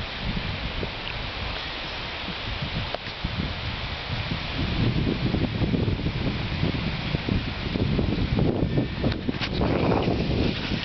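Rustling and low rumbling wind noise on the microphone, growing louder about halfway through.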